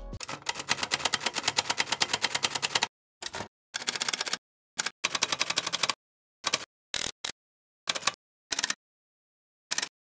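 Typing sound effect of rapid computer-keyboard key clicks: one unbroken run for about three seconds, then a series of shorter bursts broken by gaps of dead silence.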